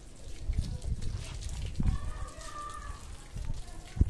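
Garden hose water spraying and splashing onto a soaked carpet, over a low rumbling noise. About two seconds in, a brief high-pitched call lasts about a second.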